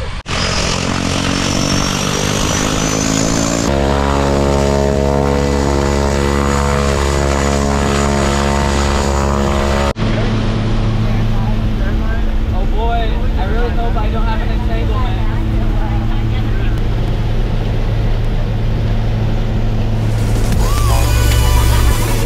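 Propeller aircraft engine running, its pitch rising over the first few seconds and then holding steady. After a cut about ten seconds in it becomes a lower steady drone heard inside the cabin, growing louder near the end.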